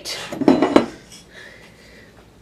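Steel clattering and scraping against metal in one loud burst lasting under a second: a steel workpiece being handled and set in place on a drill press table.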